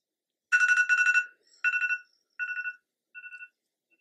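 Electronic alarm beeping in four bursts of rapid trilled beeps. The first burst is the loudest and each one after it is quieter. It is an alarm sound effect added in editing.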